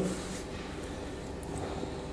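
Quiet room tone: a faint, steady background hum with no distinct sound.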